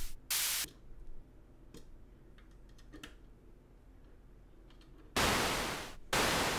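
Modular-synth white noise chopped by an envelope into short percussive hits and passed through the Propust's 3.5 kHz passive high-pass filter, a thin hi-hat-like hiss, heard once just under a second in. A few faint clicks follow, then near the end a longer, fuller noise hit reaching down into the bass, the snare-drum-like sound of the low-pass output.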